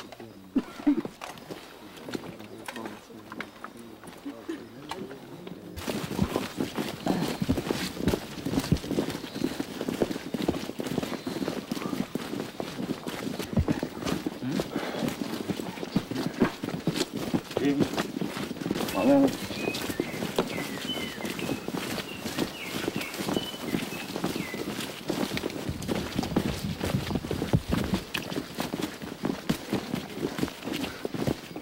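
Many irregular knocks, crunches and rustles of people moving and working in dry undergrowth, with faint voices underneath. It gets much louder about six seconds in.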